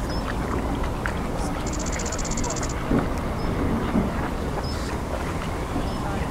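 Outdoor lakeside ambience: a steady low rumble and hiss, with a rapid high trill about two seconds in and a few faint short chirps from birds.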